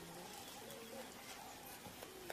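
Faint, low bird calls over a steady hiss.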